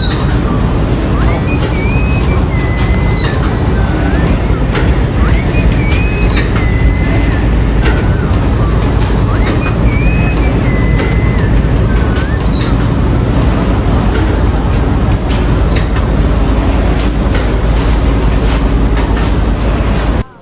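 Machinery running with a loud, steady rumble, with short high whistling glides recurring every few seconds.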